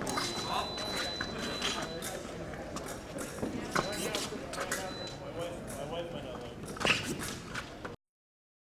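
Fencers' feet shuffling and tapping on the fencing strip, with a sharper knock about seven seconds in, over the murmur of voices in a large hall. A thin, steady high tone sounds through the first two seconds and briefly twice more.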